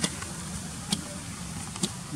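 Steady low background rumble with three sharp clicks, about a second apart.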